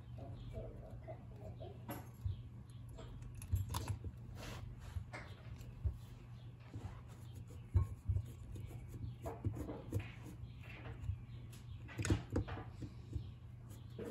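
Hand screwdriver backing out the long screws from the pulse-section cover of a jet ski carburetor, with scattered small metallic clicks and scrapes of tool and parts over a steady low hum.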